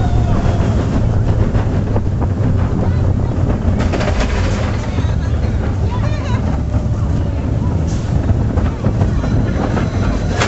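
Wind buffeting the microphone over the steady low rumble of a junior roller coaster's train running along its track (Goofy's Barnstormer). Riders' voices come through faintly.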